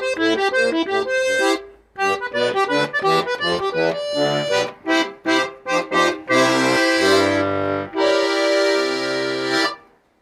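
A 1978 Soviet Tula bayan (chromatic button accordion) being played: a quick run of short notes with a brief pause about two seconds in, then long held chords over bass notes from about six seconds in, with the last chord stopping just before the end.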